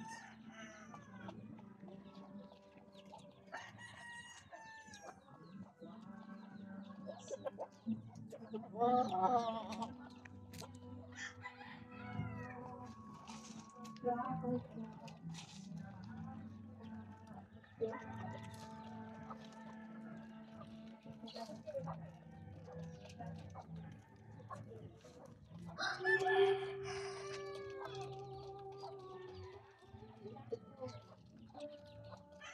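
Chickens clucking, with a rooster crowing several times; the loudest calls come about nine seconds in and again near the end.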